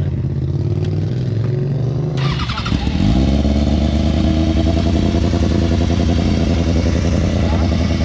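Sportbike engine idling steadily. About two to three seconds in there is a brief rushing rise, and after it the idle is louder and deeper.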